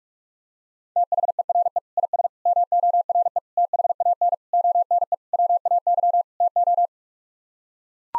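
Morse code sent at 45 words per minute as a single steady electronic tone keyed on and off in rapid dots and dashes, starting about a second in and stopping about a second before the end. It is the repeat sending of the seven-word phrase "There is more than one way to".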